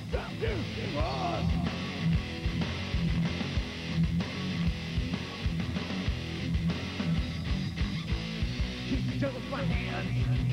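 Live rock band playing: electric guitar, bass and drums, with steady drum hits driving the beat.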